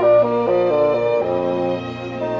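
Solo bassoon with chamber orchestra in a slow, singing romance: the bassoon's melody moves in short notes over sustained string and wind accompaniment.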